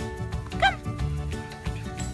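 A puppy gives one short high yip, rising then falling in pitch, about two thirds of a second in, over background music.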